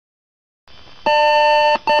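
Computer power-on self-test (POST) beep from the PC speaker as the BIOS screen comes up: one long beep about a second in, then a short beep starting near the end, over a faint hiss.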